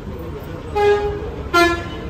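Bus horn sounding two short toots, the second lower in pitch and slightly louder, over steady low bus-stand background noise.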